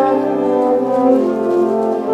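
Concert wind band playing held chords with the brass to the fore; the harmony moves to new notes about halfway through.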